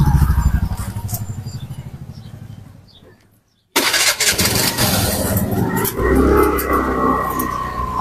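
A motorcycle engine runs with a fast low pulse while riding, fading away over the first three seconds into a brief silence. Then steady road and engine noise with a held whine resumes.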